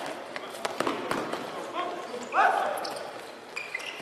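Handball practice in a sports hall: sharp thuds of the ball being bounced, passed and caught, short squeaks of sports shoes on the hall floor, and a loud shout from a player about two and a half seconds in, all echoing in the hall.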